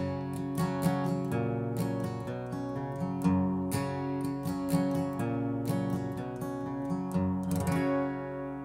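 Acoustic guitar (a custom Gibson LG-2 tuned a half step down) picking a repeating pattern on a C chord, fifth, second, fourth and third strings in turn, played up to speed. The notes ring over one another.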